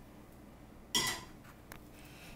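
A single sharp clink of kitchen dishware about a second in, ringing briefly, followed by a fainter tap.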